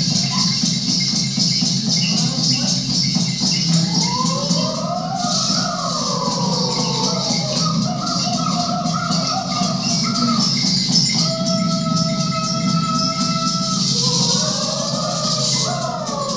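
Indigenous dance music from a documentary, played over speakers in a room: shaken rattles run throughout under a high melody line that glides up and down, then holds long steady notes about two-thirds of the way through.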